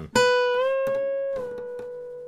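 A single note on an acoustic guitar, the B at the 12th fret of the second string, plucked and bent up a full step towards C sharp, held, then released back down to B about a second and a half in. It rings on, fading slowly.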